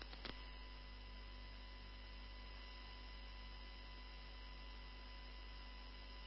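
Dead air on a radio broadcast line: a faint, steady electrical mains hum, with a couple of faint clicks just after the start.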